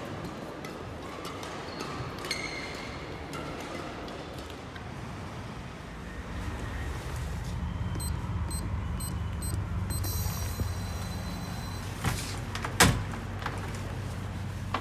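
A white-framed glass door being worked: a high electronic beeping that pulses and then holds steady, followed near the end by two sharp clunks as the door is opened and swung shut, over a low hum.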